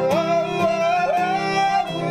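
A man singing over a strummed acoustic guitar; the melody slides up at the start, is held for over a second, then steps down near the end.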